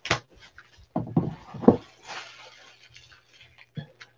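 A cardboard jersey box in plastic wrap being handled and set down on a desk: a sharp click at the start, a few knocks about a second in, then a short rustle of the wrap.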